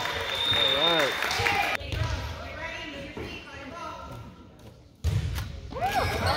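Gym sounds during a youth volleyball rally in a large, echoing hall: players' and spectators' voices with sharp thuds of the ball being played. The sound dies away through the middle and comes back abruptly about five seconds in.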